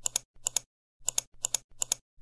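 Clicking sound effect for an animated subscribe button: short, sharp clicks coming in quick pairs, about five pairs in two seconds, like a mouse or keyboard being clicked.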